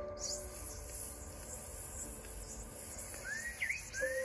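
A long, steady hiss, made as a snake's hiss, held for about four seconds. A few short bird chirps come in near the end.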